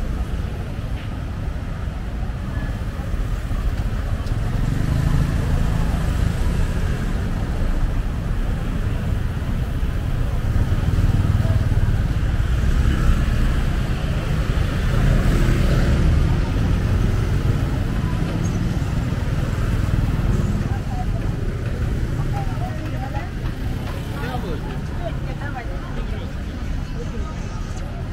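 Busy street ambience: motor scooters and cars running past with a low rumble, under the chatter of people around market stalls. The traffic is louder through the middle.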